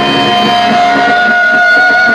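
Live heavy-metal band hitting the song's final chord, then an electric guitar holding a long ringing note, with a second, higher tone joining about a second in, over a cheering festival crowd.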